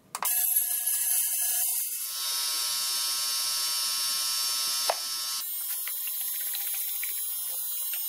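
Digital ultrasonic cleaner switched on with a click and running with a loud, steady high-pitched buzz made of many fixed tones, as it cleans rusty metal parts in its basket. The tone of the buzz shifts about two seconds in and again about halfway through.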